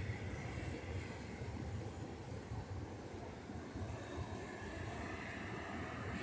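Faint, steady low rumble of ocean surf.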